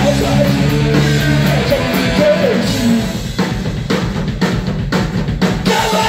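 A live punk/metal band of electric guitar, bass guitar and drum kit playing loud through amplifiers. About halfway through, the guitar and bass drop out and the drum kit carries on alone with a run of hits.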